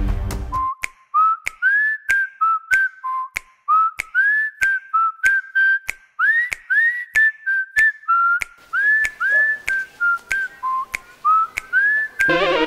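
A whistled tune, its notes swooping up into pitch, over sharp clicks at a steady beat of about two a second.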